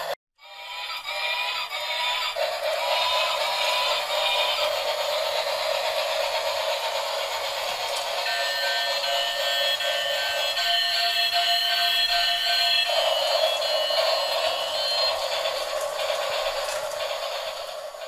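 Toy bubble-blowing locomotive playing an electronic melody through its built-in speaker as it runs.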